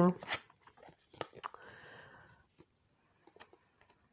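Oracle cards being picked up off a cloth-covered table and squared together in the hand: a few light clicks and taps, with a brief soft sliding rustle of card on card about two seconds in.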